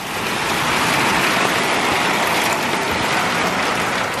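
Heavy rain pouring down on a covered deck and its roof, a steady hiss that grows louder over the first second.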